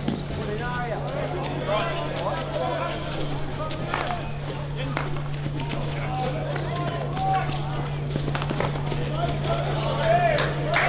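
Field hockey players calling and shouting to each other during play, with sharp clacks of sticks hitting the ball now and then, over a steady low hum.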